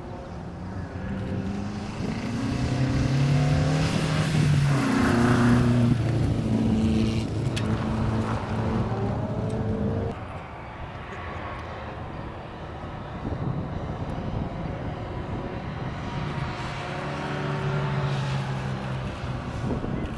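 Rally car engines revving hard as cars pass at speed, with the pitch climbing and stepping with gear changes. The first car is loudest in the first half and the sound drops off abruptly about halfway through. Another car's engine rises again near the end.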